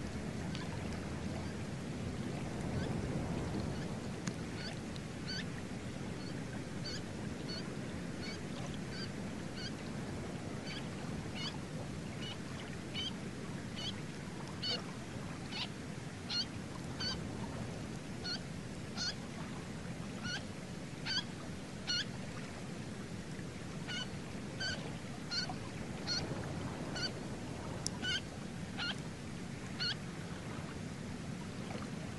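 Common snipe giving a long series of short, evenly repeated calls, about two a second, starting a few seconds in, over a steady low background rumble.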